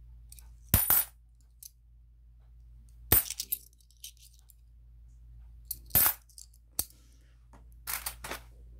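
Cupronickel 500-won coins clinking as they are handled and set down: about five separate sharp clinks at uneven intervals, a couple of them short rattles of several coins together.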